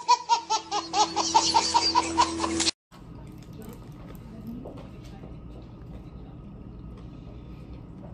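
A baby laughing hard in quick, even, high-pitched bursts, cut off abruptly under three seconds in; after that only low room tone.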